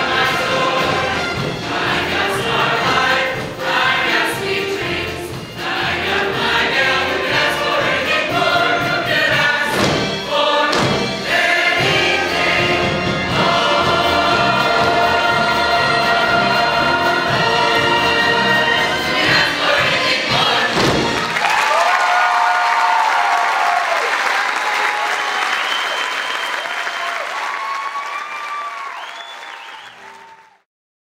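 Large cast chorus singing a musical-theatre finale with band accompaniment, ending on a final hit about 21 seconds in. Audience applause and cheering follow and fade out.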